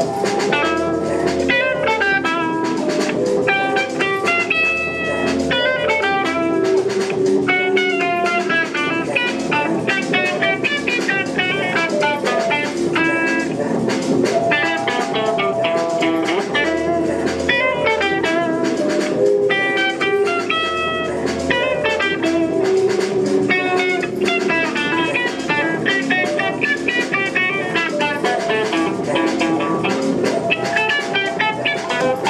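Live instrumental music: an electric guitar picking quick melodic note patterns over sustained low bass notes that change every few seconds.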